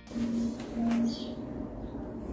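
Low steady electrical hum with a faint whirr from a split air conditioner running on a MENSELA 3000 W off-grid inverter fed by two car batteries, as its compressor comes on under the inverter's load.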